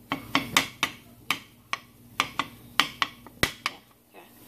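Metal spoon scraping and clinking against a stainless steel pan while stirring a dry, crumbly flour-and-oil roux, in repeated sharp, uneven clinks about three a second.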